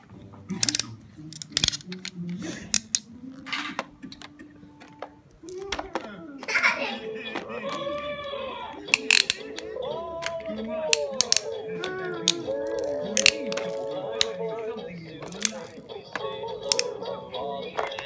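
Hard plastic toys clacking and clicking as they are handled. About five and a half seconds in, an electronic Fisher-Price toy train's speaker starts playing a tune with sweeping voice-like sound effects, and the plastic clicks go on over it.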